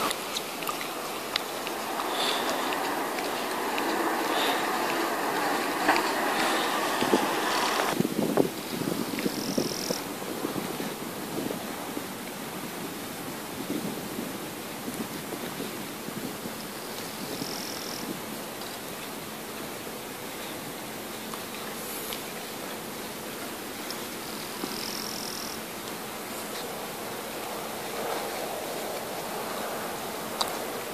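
Steady outdoor background noise, a hiss that is louder for the first eight seconds and then drops to a quieter steady level. A few short high chirps come roughly every eight seconds.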